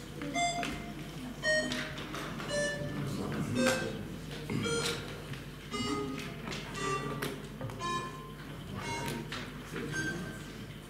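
Electronic voting system playing a slow tune of single ringing electronic notes, about one a second at changing pitches, while the vote is being taken.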